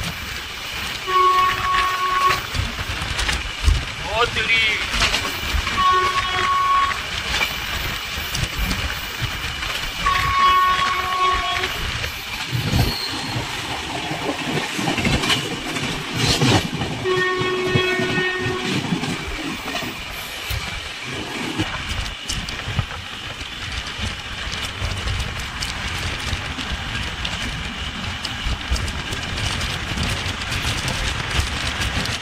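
Moving passenger train running on the track, with steady rumble and wheel clatter. A train horn sounds four times, in steady single-note blasts of a second or so each, spread over the first twenty seconds.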